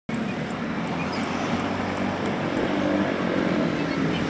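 Motorbike engine running steadily, with wind and road noise as the bike rides along.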